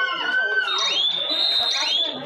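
Shouting voices during a kabaddi raid. High calls rising in pitch repeat about once a second over a general background of voices.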